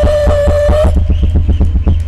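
Electronic keyboard music with a fast, steady beat over a deep bass line. A held note stops about a second in.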